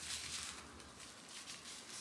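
Faint rustling and scraping of hands handling a small advent-calendar packaging tube as it is opened.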